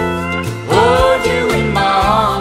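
Country song instrumental break: a lead instrument plays gliding, bending notes over steady bass and guitar backing.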